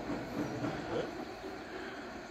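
Murmured conversation among a group of men, with a steady low rumble underneath.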